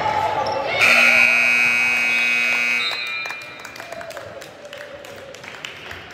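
Gymnasium scoreboard horn sounding once for about two seconds, a steady buzzing tone marking the game clock running out, over shouting voices in the gym. Scattered knocks and ball bounces follow.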